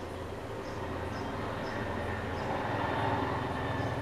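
A steady low hum of room background, growing slightly louder toward the end, with faint soft rustles as a wet paper sheet mask is peeled off the face.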